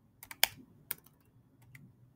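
Computer keyboard keystrokes: a handful of light, irregular key clicks, the loudest about half a second in.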